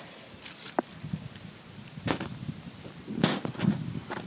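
A hand scraping and rummaging through wood-chip mulch and soil, with dry chips and straw rustling and crackling in a few short bursts.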